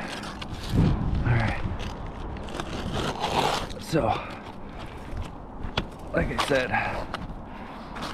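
Utility knife scraping and slicing through an asphalt cap shingle, mixed with low wordless vocal sounds and one sharp click about two-thirds of the way in.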